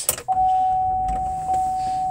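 A 2016 GMC Acadia's V6 started with the ignition key: a click, then the engine cranking and catching as a low rumble. A steady, high electronic chime tone starts just after the key turns and keeps sounding.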